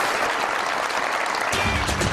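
Studio audience applauding. About one and a half seconds in, music with a steady bass line starts under the applause.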